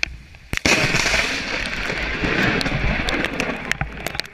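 Lightning striking very close: a sharp crack about half a second in, then loud crackling thunder that rolls on for about three seconds, slowly fading.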